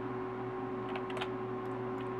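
Steady low hum, with a couple of faint computer mouse clicks about a second in.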